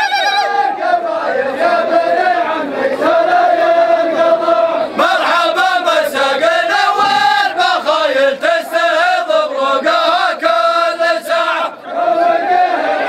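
A group of men chanting together in unison, holding long wavering notes. The chant breaks off briefly near the end.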